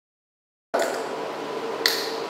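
Dead silence for the first moment, a dropout in the recording, then steady room tone in a hall with one sharp click shortly before the end.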